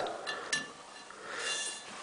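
Quiet handling noise: a light click about half a second in, then a soft rustle.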